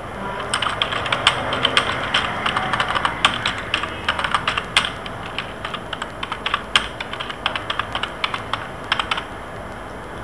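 Typing on a computer keyboard: an irregular run of keystrokes that starts about half a second in and stops about nine seconds in.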